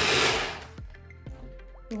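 Braun electric chopper whirring as it purées tomatoes, then stopping about half a second in.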